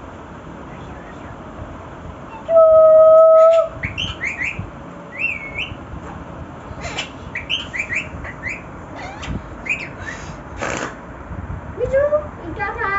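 Rose-ringed parakeets calling: one long, steady whistle about two and a half seconds in, then a run of short rising and falling chirps, with a brief rustle near the end.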